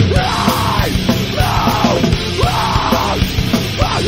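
Metalcore recording: distorted guitars and drums under harsh yelled vocals that come in short phrases about once a second.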